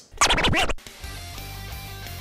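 A short record-scratch sound effect, then outro music starts about a second in and runs on at an even level.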